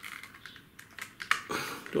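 Light plastic clicks and rattles as a Kyosho Mini-Z Monster Truck, a small radio-controlled truck, is handled and its plastic body shell is pried at, with a couple of sharper clicks about a second and a half in.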